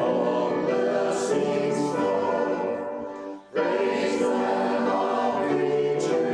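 A small church choir of men and women singing together with piano accompaniment; the singing breaks off briefly about halfway through, then comes back in.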